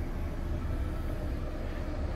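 Steady low rumble of outdoor background noise in an open parking lot, with no distinct events.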